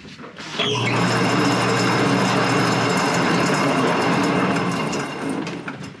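Old yarn-doubling machine at a wool mill starting up with a brief rising whine and then running steadily, its rollers and spindles twisting two yarns together into a doubled yarn and winding it onto bobbins; it stops just before the end.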